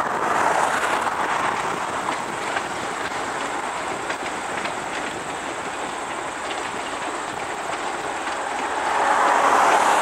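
A passenger train of private railroad cars rolling past at a distance: a steady rush of wheels with faint clicks over the rail joints. Near the end a car passing on the highway swells over it.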